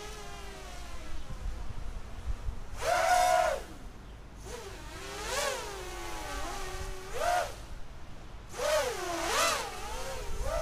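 Small quadcopter's four DYS BE1806 brushless motors whining overhead, the pitch rising and falling with the throttle. There are about four louder punches, the strongest a few seconds in and near the end. It is flying on a 4S battery with the motor bells' retaining C-clips removed.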